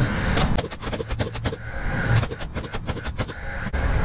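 Framing nail gun driving nails into 2x lumber: two quick runs of sharp shots, each about a second long, and one more shot near the end.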